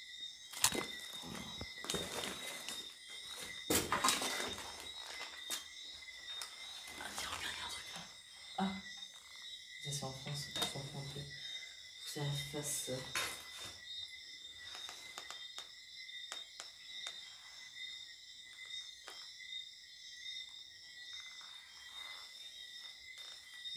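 Paper rustling and objects being shuffled as an old notebook and loose papers are handled and searched through, with irregular clicks and knocks. A steady high-pitched tone sits underneath.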